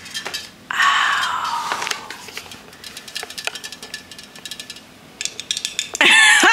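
A sparkling drink being poured into a glass about a second in, followed by the fizz of its bubbles as many tiny pops. The fizzing grows denser near the end.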